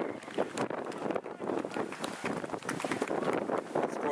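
Wind buffeting the camcorder's microphone, an irregular, gusty crackle.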